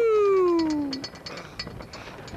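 A person's voice imitating a howling wind: one long 'oooo' that slides down in pitch and stops about a second in.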